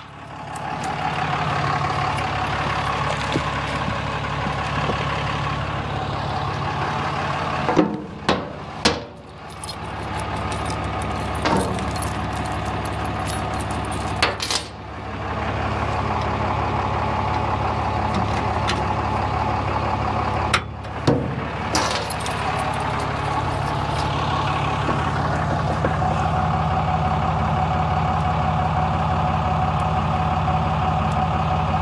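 Pickup truck engine idling steadily, with a few sharp metal clicks and clanks from the fifth-wheel hitch's handle and latch being worked.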